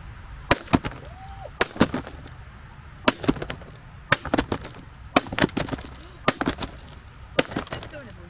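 Hammer repeatedly striking an old aluminium MacBook Pro laptop lying in its cardboard box, smashing it. There are about a dozen sharp blows, mostly in quick pairs about a second apart.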